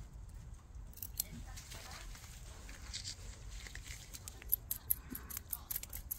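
Faint clicking and scratching of metal tweezers picking old potting soil out of a succulent's root ball, with loose soil crumbs falling into a basin. The clicks grow more frequent in the last second and a half.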